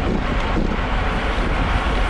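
Steady wind noise rushing over a bike-mounted camera's microphone at about 29 mph, mixed with road-bike tyre noise on rough asphalt.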